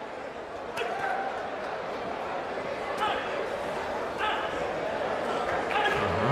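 Arena crowd noise at a live boxing bout: a steady murmur with short shouts breaking out every second or two.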